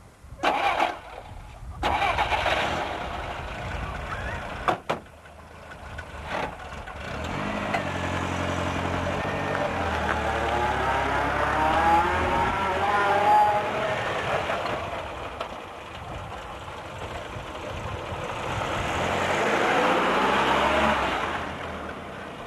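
A small petrol saloon car: a few sharp thumps of doors shutting, then the engine starts and runs with a wavering note. Near the end the engine note rises as the car pulls away.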